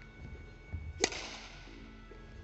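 Badminton racket striking a shuttlecock once, about a second in: a single sharp crack that rings on in the echo of a large hall.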